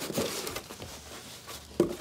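Cardboard boot box being cut open and its lid pulled back: scratchy scraping and rustling of cardboard and tape, with a sharp snap near the end.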